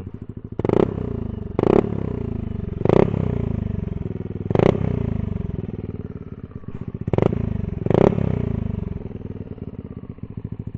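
Yamaha Aerox 155 scooter's single-cylinder engine running through a 3 Tech Ronin Hanzo aftermarket exhaust switched to its loudest racing mode. It idles and is blipped six times, each rev rising sharply and then falling back to idle.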